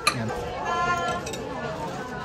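A single sharp clink of metal cutlery right at the start, then voices in the background.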